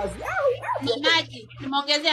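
Human voices in playful back-and-forth: exclamations whose pitch swoops up and down in the first second, then quick speech.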